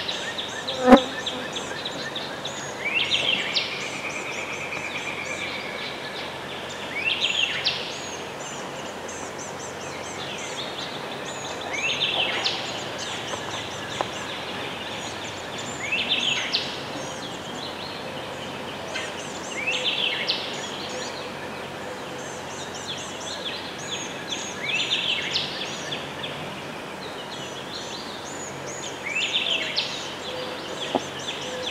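A songbird sings one short rising song about every four seconds over a steady outdoor hiss. A single sharp knock comes about a second in.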